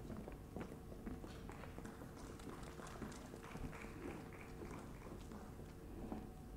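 Faint hall room tone with a steady hum and scattered soft taps and knocks.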